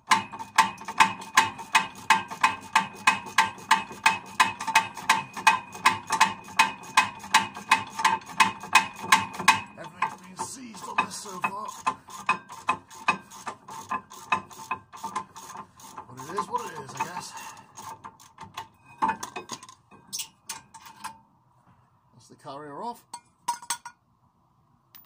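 Hand ratchet clicking rapidly and evenly as it undoes a brake caliper carrier bolt, each click with a slight metallic ring. After about ten seconds the clicking turns slower and irregular, mixed with light metal clinks.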